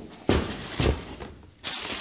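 A plastic shoe bag crinkling and rustling as it is handled, in two bouts: one about a quarter second in lasting about a second, and another starting near the end.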